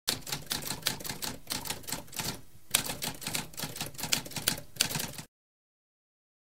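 Typewriter sound effect: a fast run of key strikes, broken by a short pause about halfway, that stops abruptly about a second before the end.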